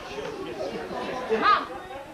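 Scattered human voices chattering, with a short, loud, high-pitched vocal cry that rises and falls about one and a half seconds in.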